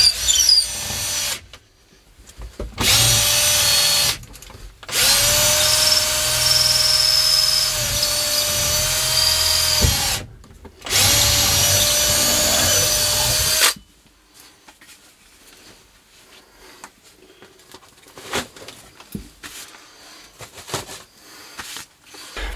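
A drill with a long bit on an extension boring a pilot hole up through the roof. The motor runs in four bursts of one to five seconds at a steady pitch, the longest in the middle. Faint handling and rustling follow once the bit is through.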